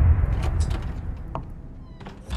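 A deep rumble of a trailer sound-design hit dies away, with a few short, sharp high-pitched sounds over its fading tail.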